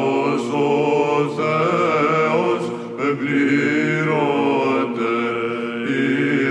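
Byzantine chant sung by male Athonite monks in the plagal fourth mode: a melismatic melody moving over a steadily held ison drone, with a short breath break around the middle.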